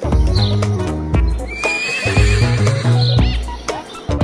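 A horse whinnying, with a wavering trill about halfway through, over background music with a steady beat.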